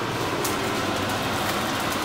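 Sausages sizzling steadily as they fry in a pan, over a low steady hum.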